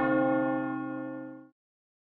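Logo sting sound effect: a deep bell-like tone with many overtones, fading steadily and then cut off abruptly about one and a half seconds in.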